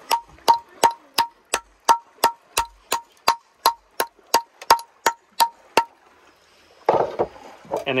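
Hammer knocking steadily on a conch shell, about three sharp, slightly ringing taps a second, stopping about three-quarters of the way through. The hammer is breaking a hole in the shell's spire so the muscle attaching the conch to its shell can be cut free and the animal pulled out.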